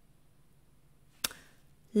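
A quiet pause broken by a single short mouth click as the lips part, about a second in, followed by a faint intake of breath before speech resumes.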